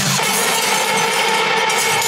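Electronic music with the beat and bass dropped out, leaving a steady held synth chord with a bright shimmering top.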